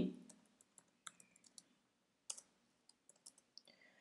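Faint computer keyboard keystrokes: a scattering of light, irregular clicks as a line of code is typed.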